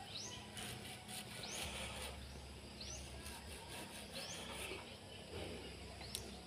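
A bird calling faintly and repeatedly, a short high rising note every second or so, over quiet rural background.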